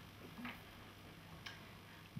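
Near silence: quiet room tone with two faint clicks about a second apart.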